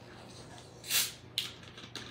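A plastic Dr Pepper bottle is twisted open. About a second in there is a short hiss of carbonation escaping, followed by a sharp click.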